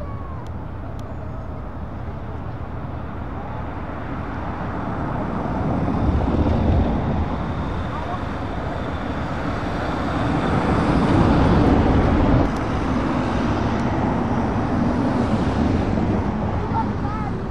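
Vans driving past one after another, engine and tyre noise swelling as each draws near, loudest about six seconds in and again from about ten to twelve seconds, then dropping abruptly.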